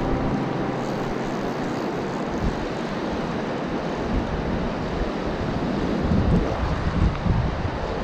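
Fast river current rushing steadily around the wader, with wind buffeting the microphone in low gusts that grow stronger in the second half.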